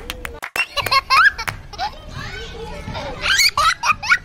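A young child laughing and squealing with delight in high-pitched bursts, loudest about a second in and again near the end.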